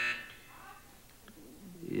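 A short lull in a TV studio: low room tone with faint traces of voices. A held sound from the moment before dies away just after the start, and a man's voice begins at the very end.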